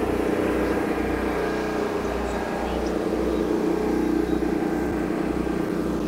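DJI Agras T40 spray drone's rotors humming as it flies in: a steady hum of several tones whose pitch wavers slightly.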